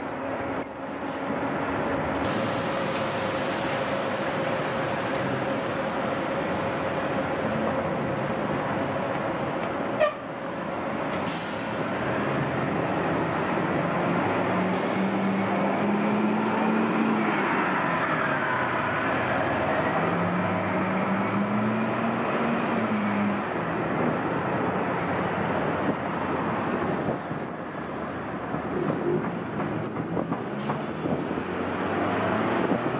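A diesel city transit bus running close by as it moves along the street, its engine note rising and falling twice. A sharp click about ten seconds in.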